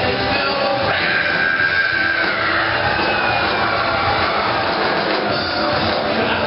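Rock music from a band with electric guitar, playing steadily and loudly throughout.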